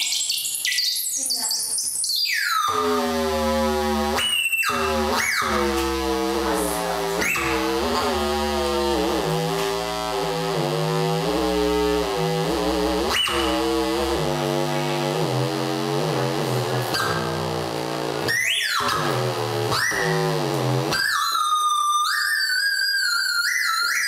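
Electronic noise music from an interactive sound installation: a dense stack of pitched tones wavering up and down over a low drone, cut by a few sharp sweeps. Near the end it switches to stepped high tones.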